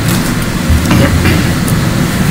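Steady low rumble of a room's air-conditioning or ventilation system, picked up through the table microphones, with faint traces of a voice.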